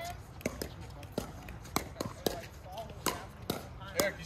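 Pickleball paddles hitting a hard plastic pickleball in rally play: a run of sharp, irregularly spaced pops, several coming close together.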